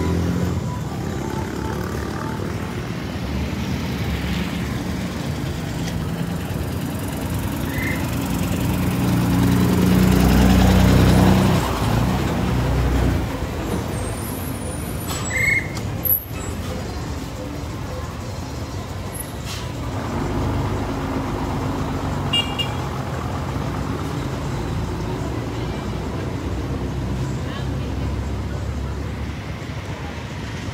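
Street traffic: vehicle engines running in a slow-moving line, with one vehicle passing close and louder about ten seconds in. A few short high toots are scattered through.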